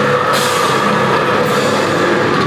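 Heavy rock band playing live and loud: drum kit, electric bass and guitar together in a steady wall of sound.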